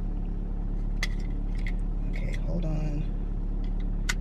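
Car engine idling steadily, heard from inside the cabin, with a few light clicks and crinkles as a clip-on air freshener is worked out of its plastic packaging.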